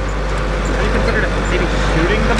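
Compact farm tractor's engine running at a steady pace as it tows a hay wagon, heard from the wagon behind it, with a deep, even hum. Faint voices of riders are heard under it.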